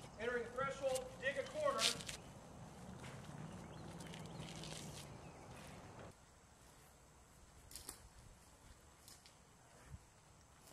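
A man's voice calling out for about two seconds, followed by a steady low hum that cuts off suddenly about six seconds in, then a quiet stretch with a few faint clicks.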